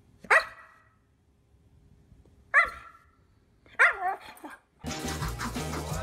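A husky giving short barks, four in all, the last two close together. Music comes in near the end.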